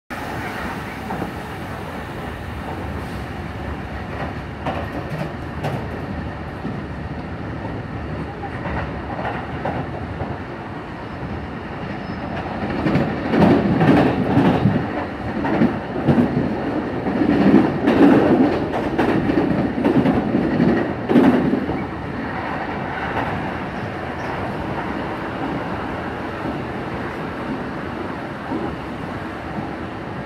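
Kintetsu electric train running, heard from inside the car: steady running noise with wheel clickety-clack. About midway it grows louder for several seconds, with a run of heavy knocks from the wheels over the track, then settles back to a steady run.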